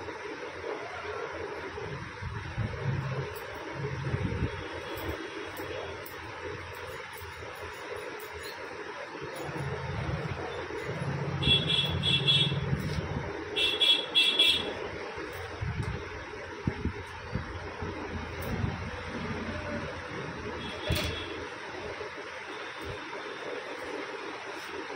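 Steady road-traffic noise with passing rumbles. Two bursts of horn beeping come a little after halfway and are the loudest sounds, and a shorter beep follows later.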